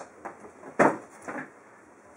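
A cardboard box being handled and put down on a counter: a few light knocks and rustles, with one sharper knock a little under a second in.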